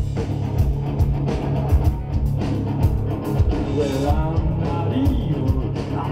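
Live hard rock band playing loudly with electric guitars, bass and a drum kit, with a singing voice over it in the second half.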